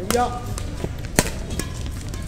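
Badminton rackets striking a shuttlecock during a rally: a fainter hit just under a second in, then a sharp, loud crack a little after a second. A player gives a short call near the start.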